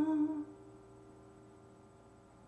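A woman's held sung note, steady in pitch, breaks off about half a second in as the song stops. Only faint room tone follows.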